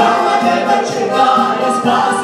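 Worship song sung by a small group of voices together through microphones, accompanied by an electronic keyboard.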